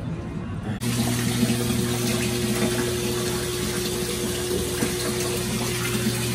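Bathtub faucet running into a tub of soaking laundry: a steady rush of water with a constant hum under it, starting suddenly about a second in.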